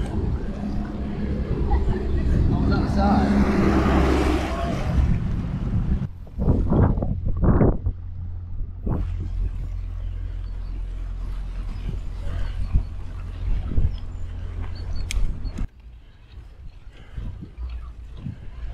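Wind buffeting a bike-mounted camera's microphone over the rumble of bicycle tyres rolling on a towpath. There are several strong gusts early on, then a steadier low rumble, and the noise drops sharply about three seconds before the end.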